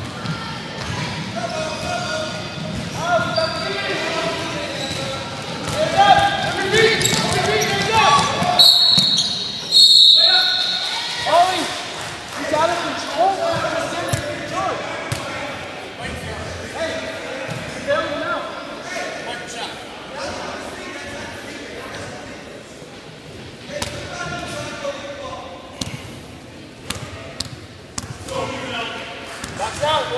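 Basketball bouncing on a hardwood gym floor under indistinct shouting voices in a large hall. About nine seconds in, a referee's whistle blows a long shrill blast with a brief break in it, stopping play.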